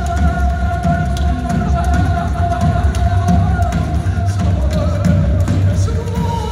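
Live band music: a long held note over a heavy, pulsing bass, the note stepping down in pitch about four and a half seconds in.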